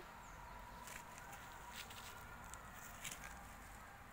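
Quiet outdoor background with a few faint, soft clicks.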